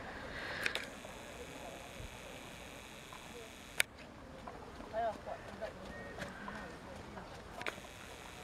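Faint, indistinct voices of people talking, with no words clear enough to make out, over low outdoor background noise. Three short sharp clicks are spread through it.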